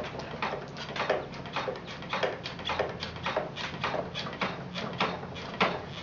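Leach-style wooden treadle kick wheel knocking in a steady rhythm, a little under two knocks a second, as the treadle is pedalled to keep the wheel head turning.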